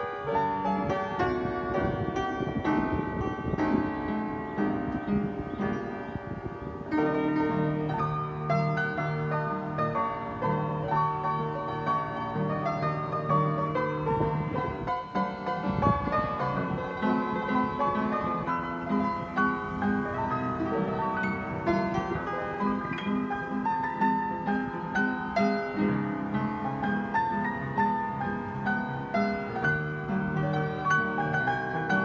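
Spinet upright piano being played, a run of chords and melody. It has just had its first tuning in perhaps 60 years and is still not fully in tune.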